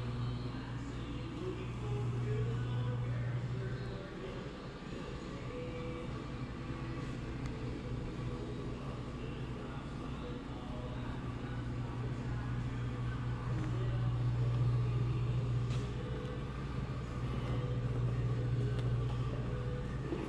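Steady low indoor rumble of background room noise, easing off for a couple of seconds about four seconds in and building up again later.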